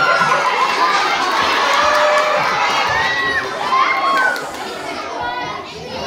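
A crowd of young children shouting and calling over one another, many high voices at once; the din eases a little near the end.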